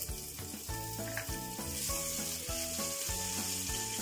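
Sliced green guindilla peppers and garlic cloves sizzling steadily in hot olive oil.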